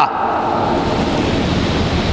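A steady, fairly loud rushing hiss with no pitch to it, like wind or static on a microphone, filling the pause between a man's phrases.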